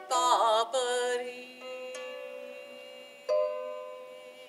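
A woman's voice sings the final word of the ballad, a held note with vibrato lasting about a second, over ringing small-harp strings. About three seconds in, the harp sounds a closing plucked chord that rings and fades away.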